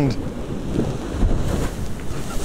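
Strong wind buffeting the microphone over rough sea, with surf breaking against the seawall and throwing spray.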